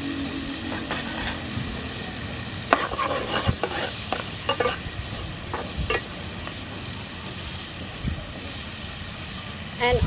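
Clams and garlic sizzling steadily in oil in a frying pan, with a metal spatula scraping and clattering against the pan in bursts of stirring from about three seconds in to about six.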